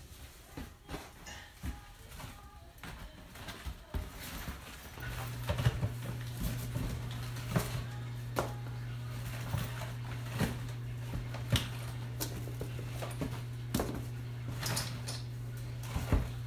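Bottled nutrition drinks and cardboard boxes being handled as the bottles are packed: scattered knocks and clicks. About five seconds in, a steady low hum starts and keeps going.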